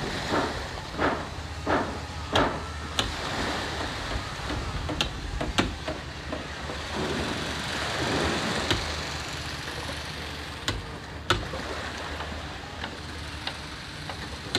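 Outdoor ambience at a wooden-boat yard on the shore: a steady low rumble with irregular sharp knocks scattered throughout.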